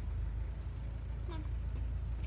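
A steady low rumble, with a woman's short call of "come on" about a second in.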